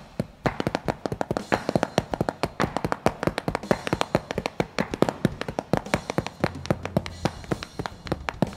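Pair of wooden drumsticks tapping a slowed-down polyrhythm: sixteenth notes in the left hand against septuplets in the right, a quick, steady stream of light taps.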